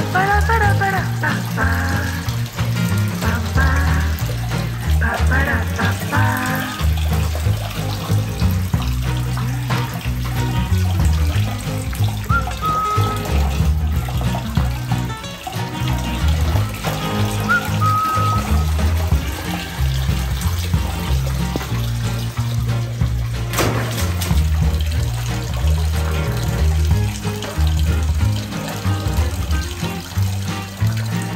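Background music with a steady bass beat, over running tap water splashing into a basin.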